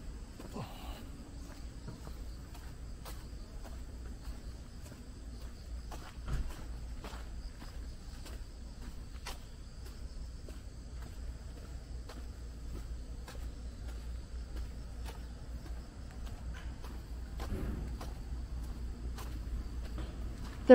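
Footsteps on a dirt park path over a steady low rumble, with a thin, steady high insect buzz behind them. There is one louder knock about six seconds in.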